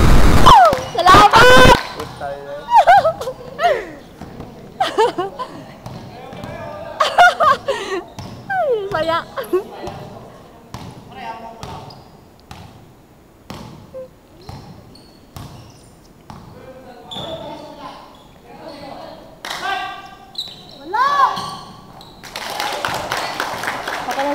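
Basketball game in an echoing gymnasium: the ball bouncing on the court amid scattered shouts from players and spectators, opening with a loud, close yell.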